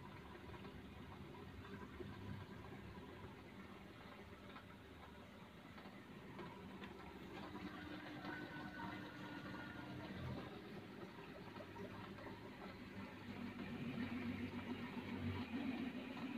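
Aquarium water pump or filter outflow splashing into the tank water: a faint, steady running-water sound that grows a little louder near the end.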